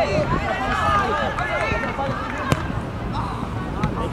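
Several voices shouting across an outdoor football pitch over a low rumble of wind and background noise, with a single sharp knock about two and a half seconds in.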